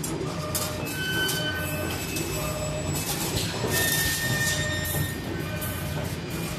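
Automatic wire bending machine running: a steady low hum, with high squealing tones that come and go and repeated short bursts of hiss.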